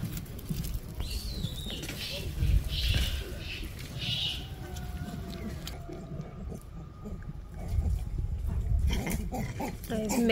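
Vervet monkeys calling at feeding time: several short, high-pitched calls in the first few seconds, over a low steady rumble.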